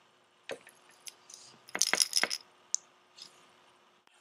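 Small metal parts of a homemade bottle cap lure clicking and jingling as it is handled: a few single clicks, then a quick cluster of clinks about two seconds in, the loudest part.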